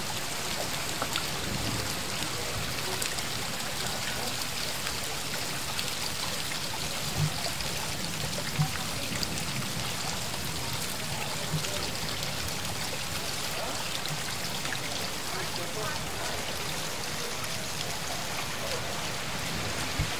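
Steady rain and running rainwater just after a hail shower: an even hiss with scattered drips, and a few louder knocks around the middle, the loudest about eight and a half seconds in.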